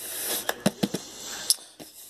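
A hand rubbing and tapping cardboard packaging, a scope box in its shipping carton, with a soft scuffing and a few light clicks and taps, the sharpest about a second and a half in.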